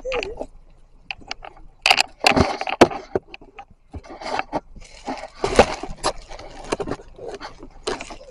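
Handling noise from a handheld camera as a person climbs out of a car: irregular rustling with a string of sharp clicks and knocks.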